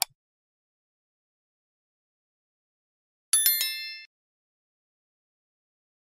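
A mouse-click sound effect as the cursor presses the subscribe button, then, about three seconds later, a short bright bell-like chime of several quick strikes that rings out in under a second. Otherwise silence.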